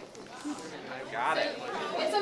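Several people chatting and talking among themselves, with a voice growing clearer and louder about a second in.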